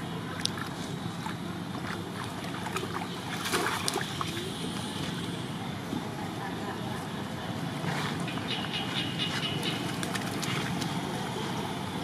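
A young long-tailed macaque wading in a shallow muddy puddle, its splashes heard as scattered light crackles, bunched about three to four seconds in and again around eight seconds, over a steady outdoor hiss with faint voices.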